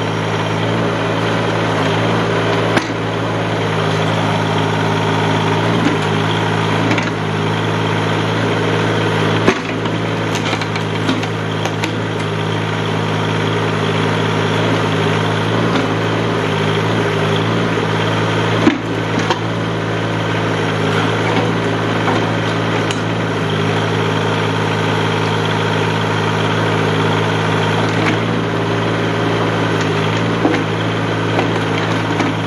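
Tractor engine running steadily to drive a backhoe as its bucket digs soil around an old tree stump, with a few sharp knocks from the bucket striking the stump or stones.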